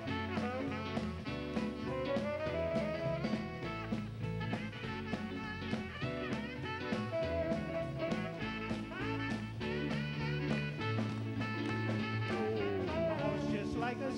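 Live band playing an instrumental break in a doo-wop song: a lead melody line over a steady drum beat and bass.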